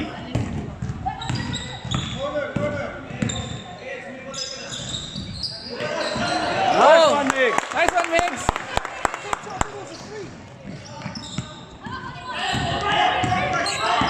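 Basketball dribbled on a hardwood gym floor, with a quick run of bounces about eight seconds in, along with sneakers squeaking during play. Voices echo in the big hall.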